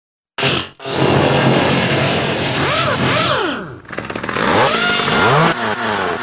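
Intro of an electronic rap track made of machine noise: power-tool and revving-engine whines that swoop up and down in pitch, coming in after a brief silence with a short stop-start at the beginning.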